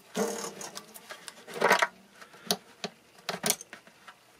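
Handling noise of hands working green masking tape around the banjo rim's metal hooks and brackets: irregular small clicks and rustles, with one louder rustle a little before the halfway point.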